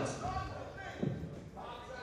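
A basketball bouncing once on a gym's hardwood floor about a second in, with faint voices in the gym around it.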